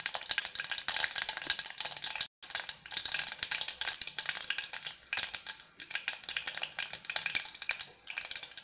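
Mustard seeds crackling and spluttering in hot oil: a dense run of small pops. It cuts out for a moment a little over two seconds in.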